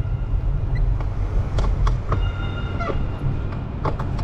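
Bicycle rolling over stone plaza paving: a steady low rumble with a few sharp clicks. A high squeal sounds about two seconds in and drops in pitch as it cuts off about a second later.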